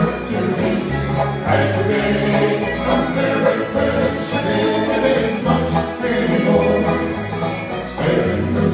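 Folk band playing a song, with acoustic instruments over a bass line that steps from note to note.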